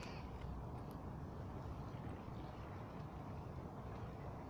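Low, steady wind rumble on the microphone over faint outdoor background noise, with no distinct sound events.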